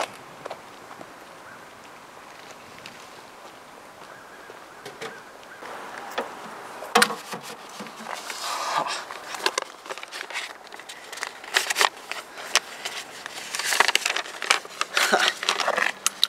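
Quiet outdoor background, then from about six seconds in a run of clicks, knocks and rustling as a metal roadside mailbox is opened and handled and something is pushed inside.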